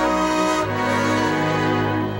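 Orchestra playing the opening bars of a song: held chords, moving to a new chord with a low bass note about half a second in.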